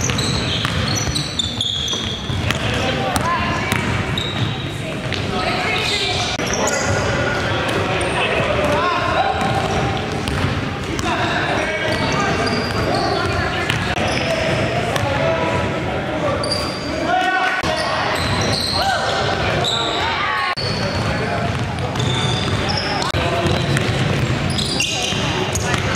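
Live game sound in a gymnasium: a basketball bouncing on the hardwood floor, sneakers squeaking in short high chirps, and players' voices calling out.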